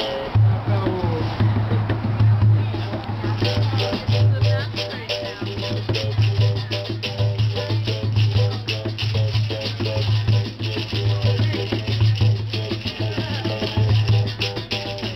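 Capoeira berimbau struck with a stick in a steady rhythmic toque, its pitch shifting between notes, with the caxixi shaker rattling on each stroke. An atabaque hand drum plays along underneath.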